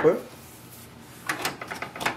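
A stack of paper being set down into a printer's plastic input tray: a short cluster of light knocks and paper rustle about a second and a half in, then a sharper click near the end.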